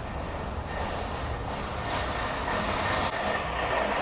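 Wheeled shopping cart rattling as it rolls over concrete, growing steadily louder.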